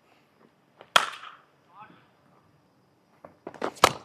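Sharp cracks of a cricket ball being struck by a bat in practice nets: one about a second in that rings off briefly, and another just before the end after a few lighter knocks.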